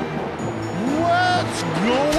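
A cartoon character's voice giving two exaggerated cries that slide sharply up in pitch, the second starting near the end, over background film music.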